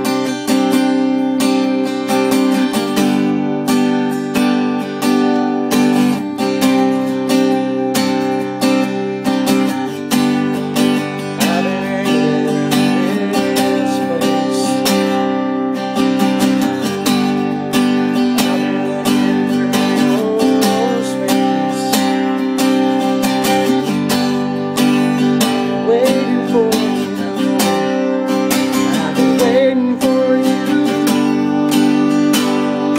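Steel-string acoustic guitar strummed in a steady rhythm, the intro of a country song.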